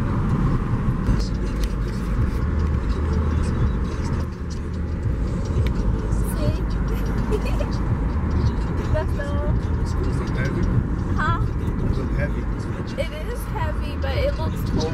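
Steady road and engine rumble inside a moving car's cabin, with voices over it toward the end.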